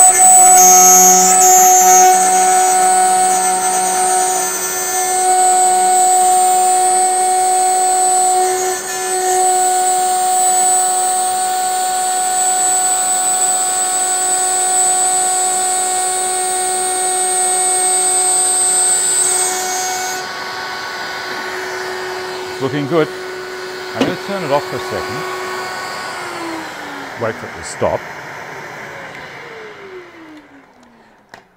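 Table-mounted router running at full speed while the ends of a finger-jointed wooden box are trimmed on it, a steady whine. About two-thirds of the way in the high whine drops out and there are a few knocks as the box is handled. Near the end the router is switched off and winds down, falling in pitch.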